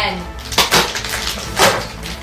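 Cardboard and plastic toy packaging being torn open by hand: a few sharp ripping and crackling sounds, the loudest about a second and a half in.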